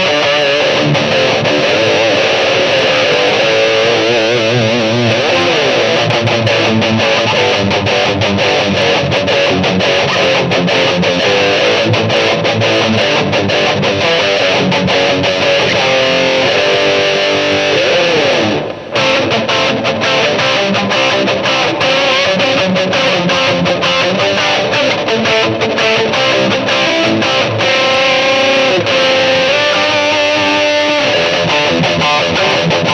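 Distorted electric guitar played through a Line 6 Helix modeler patch with a nasal, mid-heavy lead tone, plate reverb and a simple delay, playing continuous riffs and lead lines. About two-thirds through, a falling pitch bend leads into a brief break.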